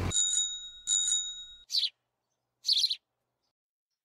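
Bicycle bell rung twice, the two rings a little under a second apart, followed by two short high bird chirps about a second apart.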